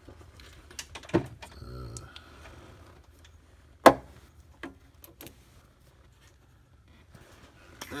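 A few sharp plastic clicks and knocks from an ignition coil's electrical connector being unclipped and pulled off, the loudest just before four seconds in, with a short mumble.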